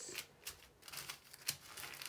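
Small plastic zip-lock bags of square resin diamond painting drills being handled and moved on a canvas: a few soft crinkles and small clicks as the bags are picked up and set down.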